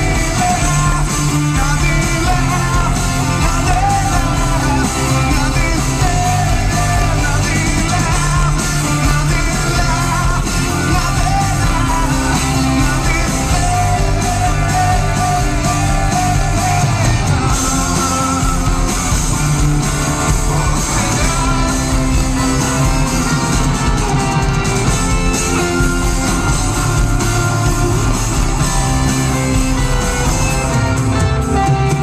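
A live rock band playing loudly: electric guitars, bass and drums, with a singer's voice at times, heard from among the audience in a large arena.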